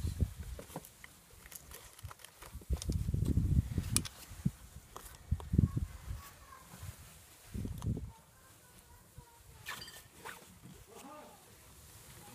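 Pieces of bark and twigs being put by hand into a clear plastic tub: irregular bumps and light knocks against the plastic, with handling rustle close to the microphone.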